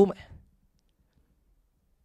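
A man's voice through a microphone trails off at the end of a phrase in the first half-second, then near silence as he pauses.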